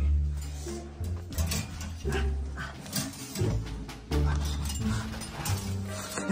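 Background music with a deep bass line that steps from note to note about once a second, with short clicks over it.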